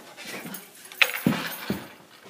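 Two people jumping together: a brief yelp about a second in, then two dull thuds about half a second apart as feet land on the floor.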